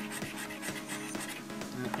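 A coin scraping the silver latex off a scratchcard in quick, repeated strokes, over background music with steady held notes.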